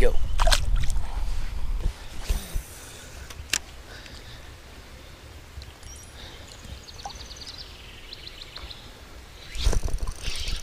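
Splashing and handling noise as a smallmouth bass is let go by hand in shallow creek water, loud for about the first two and a half seconds. Then a quieter stretch of flowing creek water with a sharp click, and loud handling noise again just before the end as the next fish is hooked.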